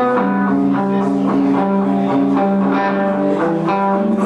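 Live band music led by guitar, chords and notes changing about every half second, with no singing in this stretch.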